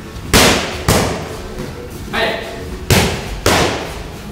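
Boxing gloves smacking focus mitts in two quick one-two combinations, each pair of punches about half a second apart, echoing in the gym hall.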